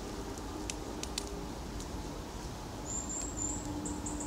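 Quiet woodland ambience: a steady low hiss with a faint hum, two soft clicks about a second in, and a brief high-pitched chirp about three seconds in.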